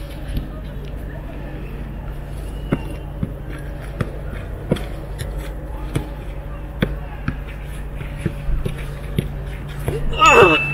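A football being kicked and kept up by players' feet: about a dozen sharp, short thuds at irregular intervals, roughly one a second, over a steady low background hum.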